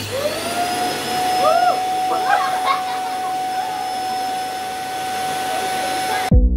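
Red bagless canister vacuum cleaner switched on: the motor starts suddenly, its whine rising in pitch over the first half second as it spins up, then running steady with a constant rushing of air.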